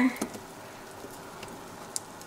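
Tortillas with meat and cheese frying in a nonstick pan, a soft steady sizzle, with one light click near the end.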